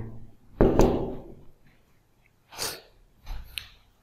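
A man's short, loud breathy burst about a second in, then a couple of quieter breaths and a small click near the end.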